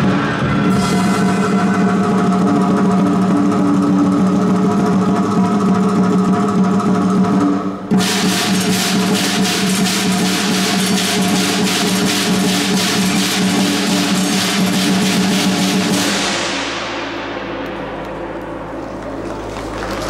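Chinese dragon dance percussion of drum, cymbals and gong playing loudly. About 8 s in it breaks into a fast drum roll with cymbals. The roll stops about 16 s in, leaving a ringing that fades.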